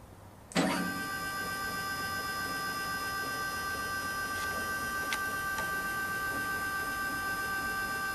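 Stepper-motor axis drive of a CNC-converted Grizzly G0705 mill/drill whining steadily as the table traverses along the X axis. The whine starts abruptly about half a second in and holds at one even pitch with several high tones.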